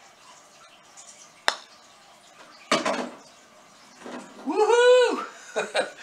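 A 1973 Ping Pal putter strikes a golf ball once with a single sharp click about a second and a half in. Near the end a man lets out a drawn-out vocal exclamation that rises and falls in pitch, the loudest sound.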